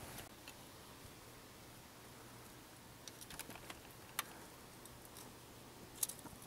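Near silence: a faint steady low hum with a few faint clicks a little past the middle and one sharper click about four seconds in.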